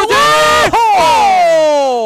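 A male football commentator's long, loud excited shout at a long-range shot. His voice jumps up in pitch at the start, then slides slowly down over about two seconds.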